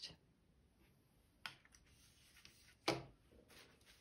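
Quiet room tone with two brief taps, one about a second and a half in and a stronger one near three seconds in, from a watercolor brush being handled.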